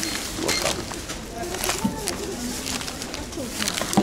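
Supermarket checkout bustle: other people's voices in the background, with plastic bags and groceries rustling and knocking as they are handled. Two short high beeps come in the first second.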